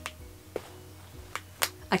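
Magnetic metal popper on a fabric tote bag snapping shut, about four sharp clicks: one about half a second in, then three close together in the second half.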